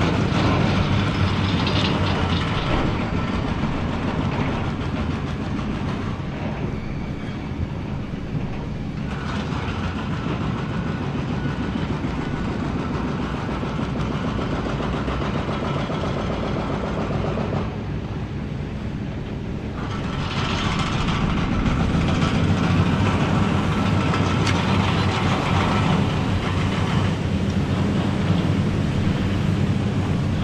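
Hitachi ZX870 high-reach demolition excavator's diesel engine running under load with a steady low drone, over a continuous rumbling, crunching noise of concrete silo walls being broken and debris coming down. The noise eases for a few seconds a little past halfway, then comes back louder.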